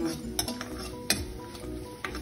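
A metal spoon stirring dried red chillies and mustard seeds in hot ghee in a kadai, with a few sharp clicks of the spoon against the pan over a light sizzle: the spice tempering for a tambuli.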